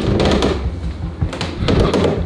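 Doorway pull-up bar knocking in the door frame under a man's weight as he pulls up, with a few sharp clicks about one and a half seconds in, over a steady low rumble.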